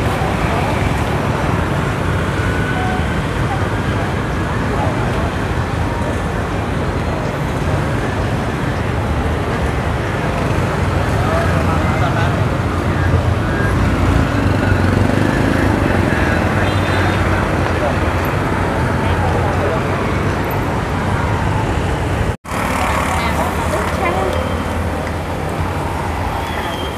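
Busy street ambience: a steady rumble of road traffic with people talking, and a brief break in the sound near the end.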